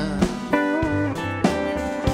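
Live band playing an instrumental passage of a song: acoustic guitar and bass under a guitar melody with a few bent notes.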